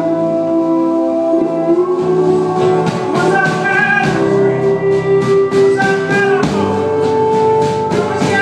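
Live acoustic folk song: a strummed acoustic guitar and a mandolin under a male voice singing long held notes with no clear words.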